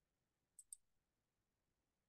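Near silence, broken about half a second in by a faint computer mouse click: two quick ticks, the button pressed and released.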